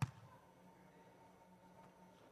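Near silence: a faint steady hum, opened by one short sharp click.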